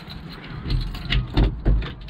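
Footsteps and knocks as someone climbs down a boat's companionway into the cabin, with camera handling noise; three heavy thumps come in the second half.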